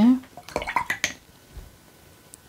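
Watercolour brush being rinsed in a water jar, tapping against its side in a quick run of light clinks about half a second to a second in.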